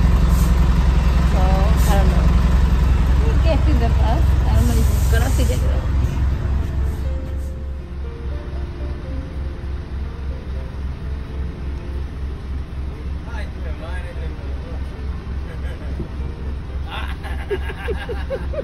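Bus engine idling: a deep, steady rumble with a fast, even pulse of several beats a second, with voices in the background.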